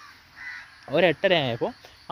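A bird calling: a few loud calls about a second in, each rising and then falling in pitch.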